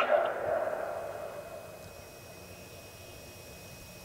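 The last words of a Federal Signal Modulator 6024 electronic siren's voice message echo and fade away over about two seconds. A faint steady hiss is left behind, with a thin high tone coming in about two seconds in.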